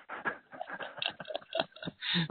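A man laughing: a quick, irregular run of short, breathy laughs.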